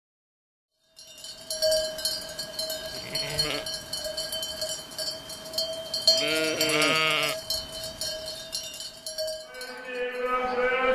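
Livestock bells clanking and ringing steadily from about a second in, with a sheep bleating twice, briefly at about three seconds and a longer wavering bleat a little past the middle.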